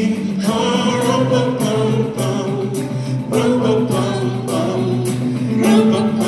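Gospel vocal group and choir singing a Christmas carol live in harmony, with a steady beat under the voices.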